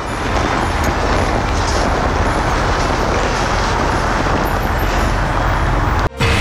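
Loud, steady outdoor background noise: an even rush with no separate events, of the kind heard from road traffic, that cuts off abruptly at the end.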